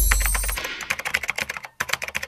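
Keyboard typing sound effect: a quick run of key clicks, several a second, marking on-screen text being typed out, with a brief gap near the end. A deep low rumble fades out about half a second in.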